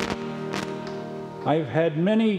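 The last chord of a hymn accompaniment, held and fading away, with two light taps near the start.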